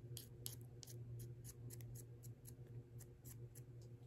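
Faint, irregular light clicks and scrapes of wooden chopsticks being handled and rubbed between the fingers, about four a second, over a steady low hum.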